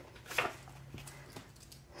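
Faint handling noise of a paper card being slid out of a zippered binder's pocket, with a soft click about half a second in and another light one near the end.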